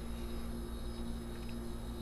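Faint steady hum with two low tones, unchanging throughout.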